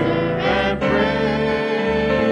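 Live worship music: two women sing a slow hymn with sustained notes and vibrato, accompanied by guitar and keyboard.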